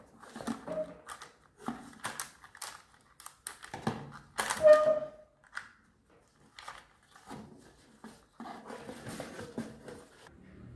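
Hands handling a cardboard shoebox and a pebble-weighted cup, fitting a pen down through the cup: irregular taps, clicks, rustles and scrapes, the loudest about four and a half seconds in.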